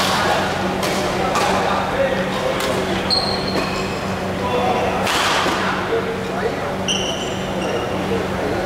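Badminton rally in a large hall: sharp cracks of rackets hitting the shuttlecock, several in the first few seconds and a louder one about five seconds in, with brief high squeaks of shoes on the wooden court floor.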